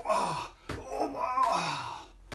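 A man's breathy groans of exertion during a wrestling drill with a grappling dummy: two long groans, each falling in pitch, the second starting under a second in.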